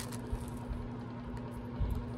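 Quiet room tone with a steady low hum, with a few faint clicks and a soft low bump near the end as a small plastic pen is handled.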